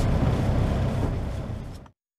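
Semi-truck's diesel engine idling while parked, heard inside the cab as a steady low rumble that fades away near the end.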